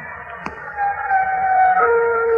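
Eerie held tones from a radio drama soundtrack: a high note slides slightly down, then a lower note takes over near the end, evoking moaning wind.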